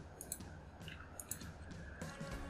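Faint clicks of a computer mouse, in two quick pairs about a second apart.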